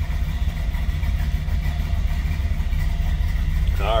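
Street rod's carbureted engine idling steadily, a low even rumble heard from inside the cabin, warming up just after a cold start.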